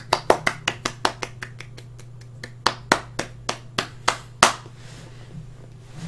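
A person clapping their hands: a quick run of about ten claps in the first second and a half, a short pause, then a slower run of about seven claps ending on the loudest one. A steady low hum lies under it.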